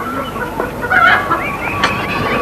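Domestic chickens clucking, with short wavering calls that come thicker in the second half.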